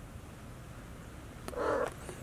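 A two-month-old Maine Coon kitten gives one short mew about one and a half seconds in, after a faint click.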